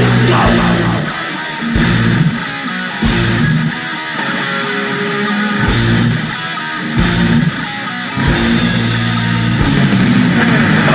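Heavy metal band recording: a distorted electric guitar riff with bass guitar and drums. Several times the bass and drums drop out for about a second, leaving the guitar before the full band comes back in.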